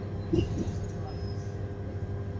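Steady low hum inside a London Underground Northern line carriage (1995 Stock) standing at a platform, with the first word of the recorded station announcement about a third of a second in.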